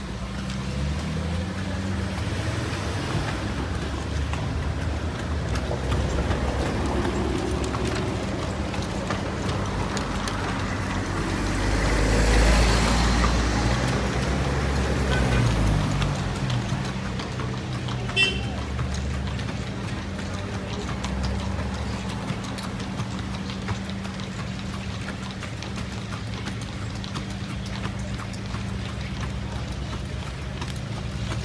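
Street traffic heard from a moving horse-drawn carriage, with the horse's hooves clip-clopping on the road and music playing in the background; a vehicle passes loudly about twelve seconds in.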